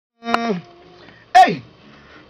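A man's voice giving two short wordless vocal shouts into a studio microphone: the first held briefly and then dropping, the second a louder, sharp cry that slides steeply down in pitch.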